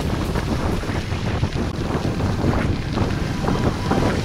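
Wind buffeting the microphone of a camera moving with a mountain bike along a gravel trail, heard as a steady low rumble with rough hiss.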